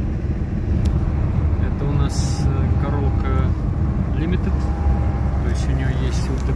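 Inside the cabin of a moving 1992 Toyota Corolla with a 2C four-cylinder diesel engine and five-speed manual: a steady low rumble of engine and road noise while cruising. A short hiss comes about two seconds in.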